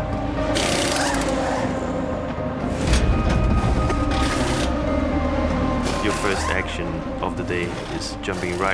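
Pit-stop work on a GT race car under background music: short bursts of hissing about a second in, near the middle and around six seconds in, and a sharp thump about three seconds in, with voices near the end.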